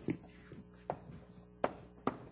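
Three sharp taps, less than a second apart, of a pen or chalk striking a board as a diagram is drawn. A faint steady hum sits underneath.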